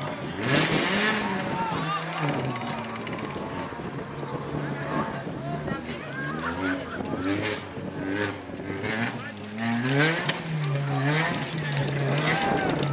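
Engine of a Peugeot 206 rally car, stranded off the road, running and revving, while several people shout over it.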